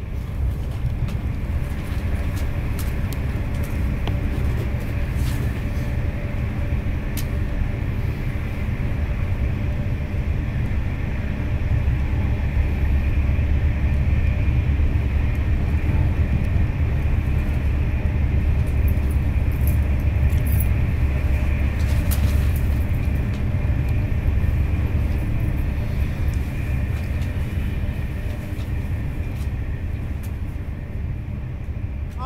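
Steady low rumble of a road vehicle driving, heard from inside the cabin, with a few faint clicks.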